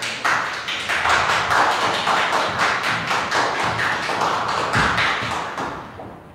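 Applause, a dense patter of many hands clapping, fading away in the last second.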